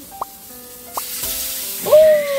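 Background music with short rising blips, and from about a second in, salmon pieces sizzling in butter in a frying pan. A loud rising 'oh' comes at the very end.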